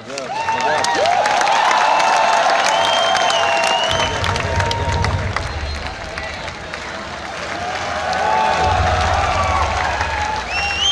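An audience applauding and cheering. It breaks out suddenly, eases off about six seconds in, then swells again.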